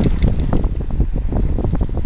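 Wind buffeting the microphone in loud, uneven gusts, over the wash of choppy sea water.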